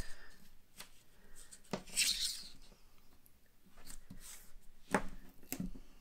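Quarter-inch double-sided tape being pulled off its roll and pressed onto cardstock: two short, faint high-pitched rasps as strips peel away, with a few sharp light clicks and taps of fingers and the roll on the paper.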